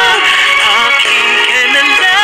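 A woman singing a pop ballad live with accompaniment, holding long notes and sliding between pitches.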